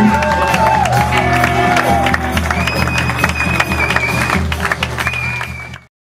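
A rock band holds out the final ringing chord of a song on electric guitars and bass, while the audience claps and cheers. The sound fades out near the end.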